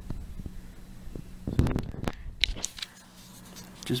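Small clicks and rustles of handling, with a denser rustle about one and a half seconds in and a brief high squeak soon after, over a low steady hum that fades out before the end. The thermostat-controlled case fan has not yet started.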